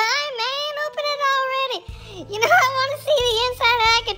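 A high-pitched, childlike cartoon voice sings in wavering phrases over a backing tune, with a short break near the middle.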